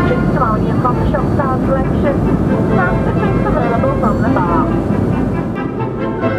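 Engine noise of a passing four-engined Avro Lancaster bomber, a dense low drone with a voice heard over it; orchestral brass music comes back in near the end.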